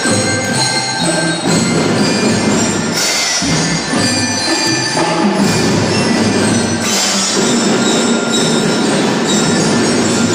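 School drum band music: xylophones and other instruments playing a tune with many held, sustained tones and a steady low note beneath.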